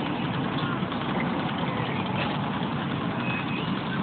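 A steady, low engine running.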